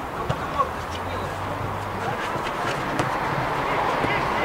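Indistinct voices of players and onlookers on an outdoor artificial-turf football pitch, with a short sharp knock about three seconds in from the football being kicked.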